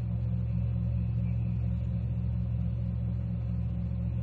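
A steady low hum in the recording's background with no speech over it, made of a few even low tones that do not change.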